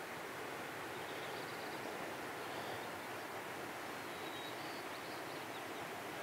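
Quiet outdoor ambience: a steady, even hiss with a few faint, short high tones scattered through it, likely distant birds.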